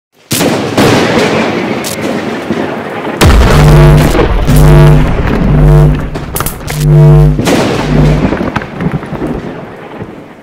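Cinematic logo sting sound design: a sudden thunder-like rumble with sharp cracks, then heavy bass booms under a low electric buzz that pulses about six times, fading out near the end.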